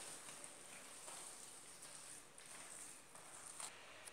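Faint wet squishing and soft scrapes of a spatula stirring a moist cabbage, potato and sardine mixture in a plastic bowl.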